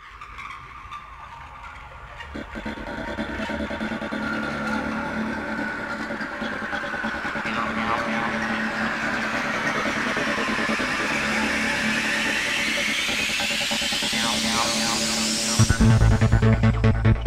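Opening of a 1990s psytrance track. Synth textures fade in out of silence and a steady low drone enters after a couple of seconds. A long filter sweep dips, then rises steeply as the build grows louder, until the kick drum and bassline come in just before the end.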